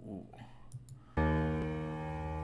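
A couple of faint clicks, then about a second in a sustained electric piano chord starts and rings on.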